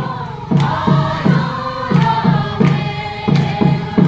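A group of voices singing a chant-like dance song together over a steady low drum beat, about three beats a second.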